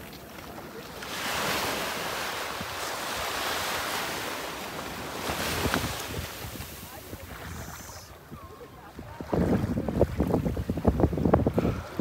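Ocean surf washing in and out, swelling and fading over several seconds, with wind noise on the microphone. In the last three seconds the wind on the microphone grows into a loud, uneven rumble.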